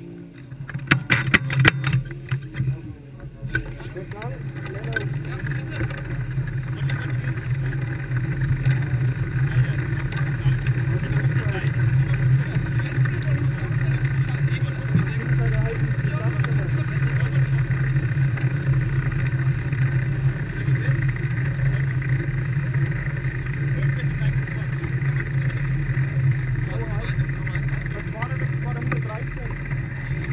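Formula Student race car's engine running at a steady low idle from about four seconds in, after a few clicks and knocks at the start.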